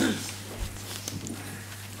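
People rising from their seats: chairs scraping and creaking on a wooden floor, with scattered knocks and shuffling, the loudest just at the start. A steady low hum runs underneath.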